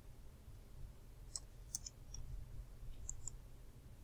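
A few faint computer mouse clicks, some in quick pairs, over a low steady room hum.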